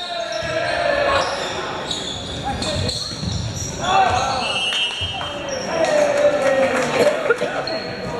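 Indoor volleyball rally in a gymnasium: sharp hits of the ball, echoing in the hall, with players and spectators shouting and calling out, loudest about four seconds in and again about six to seven seconds in.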